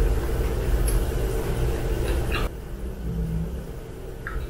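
Close-miked chewing of a mouthful of food, with a few short crisp crunches over a low rumble. It cuts off abruptly about two and a half seconds in, leaving quieter room sound.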